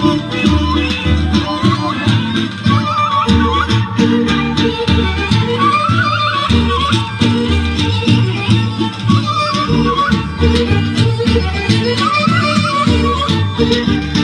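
Bulgarian folk dance music for the buchimish horo: an ornamented melody over a pulsing bass in the dance's uneven 15/16 meter.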